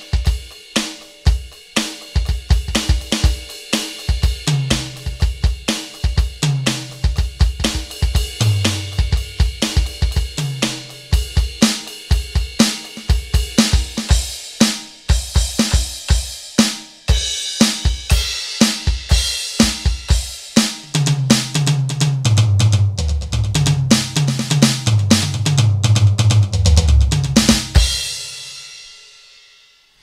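KAT KT-200 electronic drum kit on its Funk preset played as a drum groove: low, pointed kick, tight snare and trashy hi-hat, broken up by pitched tom fills. A long, dense tom run comes in the last third, then the kit stops and a cymbal rings out and fades just before the end.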